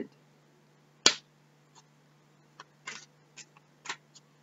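Oracle cards being handled: one sharp click about a second in, then several softer clicks and short rustles, over a faint steady hum.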